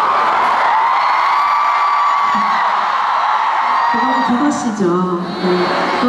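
A concert crowd cheering and screaming, many high voices holding long calls, dying down about four seconds in as a woman starts speaking through the hall's microphone.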